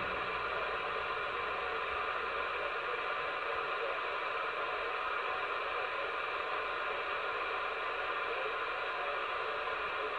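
Steady, even hiss of 10-metre band noise from an AnyTone AT-6666 radio receiving on upper sideband with the RF gain fully up, heard through the radio's speaker.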